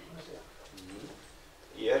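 Quiet, low murmuring voice with faint bending pitch, followed by a man starting to speak near the end.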